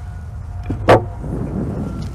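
A single sharp knock about a second in from the beekeeper handling the beehive equipment, over a steady low rumble of background noise.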